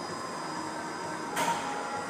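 Steady background hum of an indoor gym room, with one brief hiss a little over halfway through.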